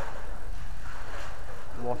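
Steady low rumble of wind on the microphone, with a man starting to speak near the end.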